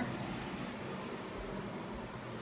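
Steady background hiss with a faint low hum, with no distinct sounds standing out.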